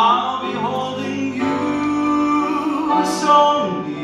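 A man singing through a microphone with grand piano accompaniment, his held notes wavering with vibrato, and a sharp sibilant about three seconds in.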